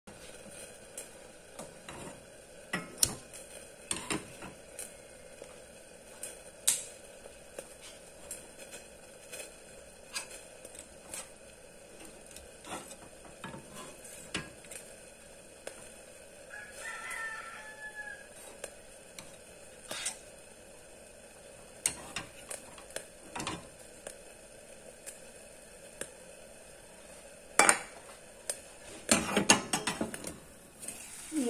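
Scattered clicks and knocks of a metal frying pan and utensils being handled on a stove, the loudest cluster near the end as a lid is set on the pan. A rooster crows once, about halfway through.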